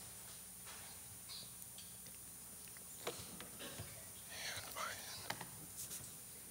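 Quiet stage room tone with a few soft handling clicks, and a brief faint whisper-like voice about four and a half seconds in.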